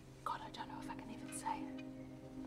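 A woman speaking quietly, almost in a whisper, saying "God, I don't know if I can even say it," over a soft, steady held music tone.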